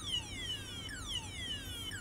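Burglar alarm siren sounding in a repeating falling sweep, about two a second, the sign that the armed alarm system has been triggered.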